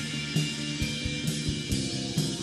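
Live band playing instrumental music: electric guitars holding sustained notes over a drum kit keeping a steady beat, with bass-drum strokes about twice a second and cymbal hits.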